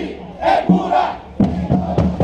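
A group of voices shouting together in unison between steady strokes of the fanfare's bass drums, which beat about every 0.7 s.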